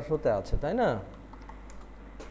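A few light computer keyboard key clicks as a number is typed in, with a sharper click about half a second in.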